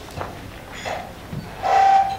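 Table microphone being handled and adjusted on its stand: a few light knocks, then a louder sound just before the end with a brief steady ringing tone in it.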